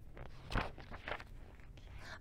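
Paper rustling as a large picture book's page is turned and the book is handled, in a few short bursts, the loudest about half a second in.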